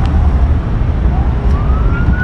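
A distant siren wailing as one thin tone, falling and then slowly rising again, over a steady low rumble of street traffic.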